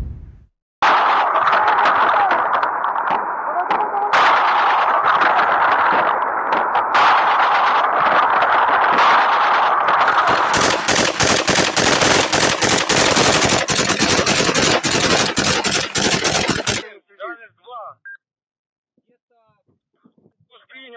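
Loud, long bursts of automatic machine-gun fire aimed at a Shahed drone flying at night. The fire starts about a second in, becomes a dense run of rapid shots about halfway through, and stops abruptly about 17 seconds in.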